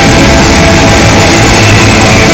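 Live blues-rock band playing loud, with electric guitars and a drum kit, heard from the audience floor.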